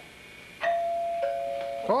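Two-note ding-dong doorbell chime: a higher note sounds about half a second in, then a lower one, and both ring on and fade slowly.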